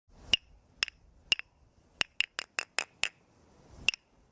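A pair of wooden clapsticks struck together, each strike a sharp click with a short bright ring. There are three slow strikes about half a second apart, then a quicker run of six at about five a second, and one last strike near the end.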